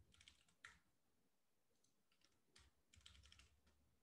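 Faint computer keyboard typing in two short bursts of rapid key clicks, one at the start and another a little over halfway through.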